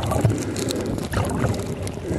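Water sloshing and bubbling around an underwater camera as a snorkeler swims over a reef, with irregular low rumbling surges and scattered faint clicks and pops.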